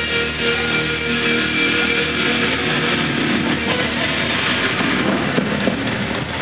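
Loud amplified live rock music heard from within a large outdoor crowd: sustained electric guitar notes ring on and fade, under a steady wash of crowd noise.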